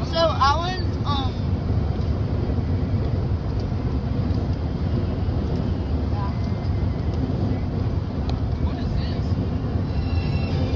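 Steady low rumble of road and engine noise inside a moving car's cabin. A brief high voice, a squeal or sung note, sounds in the first second.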